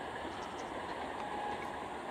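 3-phase electric multiple unit (EMU) train running past at a distance: a steady rumble of wheels on the track, with a faint high whine in the second half.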